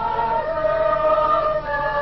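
Congregation singing a hymn together, many voices holding long, slow notes.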